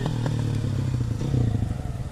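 Supermoto motorcycle engine idling close by, a low steady run with a fast, slightly uneven pulsing beat.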